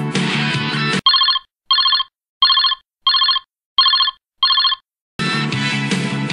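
Guitar rock background music breaks off about a second in for six short, evenly spaced electronic ringing beeps. The music resumes near the end.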